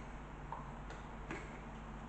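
Low room hum with a couple of faint, short clicks about a second in.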